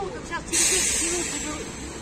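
A sudden loud hiss about half a second in, fading away over about a second, with faint voices behind it.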